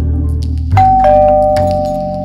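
Two-tone doorbell chime: a higher note, then a lower one about a third of a second later, both ringing on, over low background music.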